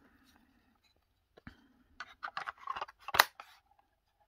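Hard plastic housing of a trail camera being handled: scattered small clicks and rubs from about two seconds in, then one sharp, loud click a little after three seconds.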